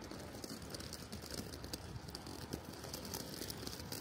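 Faint street background with light, irregular rattling clicks, several a second.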